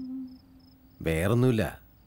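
Crickets chirping faintly in an even, rapid pulse. A held musical note fades out in the first half second, and a voice speaks a short phrase about a second in.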